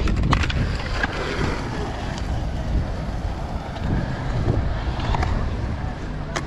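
Wind buffeting the microphone over a low rumble of skateboard wheels rolling on concrete, with a few sharp clacks of skateboards hitting the ground near the start and again about five seconds in.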